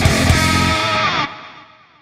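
Rock theme music with distorted guitar over a steady beat, which stops under a second in and leaves a held chord fading out.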